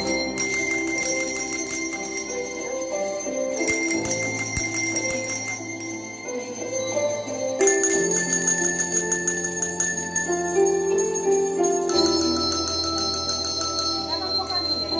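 Coloured desk bells (tap bells) rung by children in a group, sounding bell notes over a slow instrumental backing track whose chords change about every four seconds.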